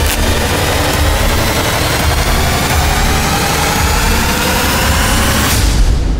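Loud, dense rumbling sound effect with a faint tone slowly rising beneath it, cutting off abruptly near the end.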